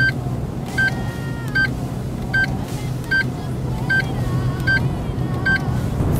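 A short, high electronic beep repeating evenly about once every 0.8 seconds, about eight times, over the steady low drone of a car's engine and road noise heard inside the cabin.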